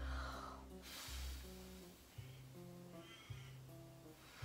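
Quiet background waltz music with held notes over a low bass line that changes note about every second. In the first second a long breath is blown out, as if blowing up a bubble.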